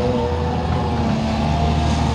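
A large engine running steadily at an even pitch, a continuous low hum of heavy machinery at a construction site beside a railway.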